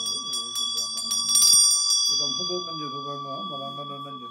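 Tibetan Buddhist hand bell (drilbu) rung with quick strokes of its clapper, about four a second, ending in a short flurry about a second and a half in, after which it is left to ring and slowly fade. A low voice recites throughout, with a brief break near two seconds.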